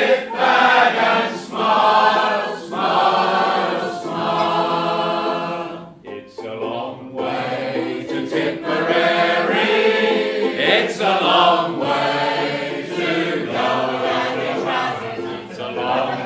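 A roomful of voices singing a music-hall chorus together, with a brief dip about six seconds in.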